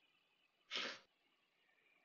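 Near silence, broken a little under a second in by one short, breathy huff from a person into a microphone, lasting about a third of a second.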